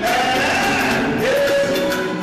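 Live music with singing: a voice holds a long note, then drops to a lower note and holds it from a little past halfway.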